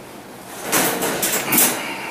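Scuffling and rustling for about a second, in several quick bursts, as a red fox is grabbed by the scruff and lifted from beside a wire crate.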